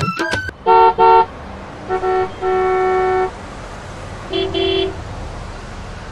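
Vehicle horns honking in road traffic: two short loud beeps, then a short honk and a longer one, then two quieter short beeps from a horn of a different pitch, over a steady hum of traffic.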